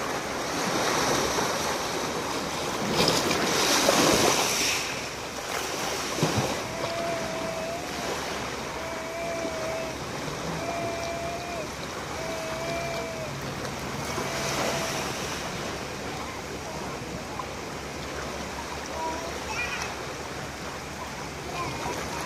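Small sea waves washing and breaking on a pebble shore, with a louder surge a few seconds in. In the middle a faint whistled tone repeats about five times, each about a second long.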